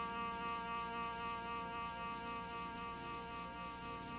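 Soft background underscore: one chord held steady, with no change in pitch or loudness.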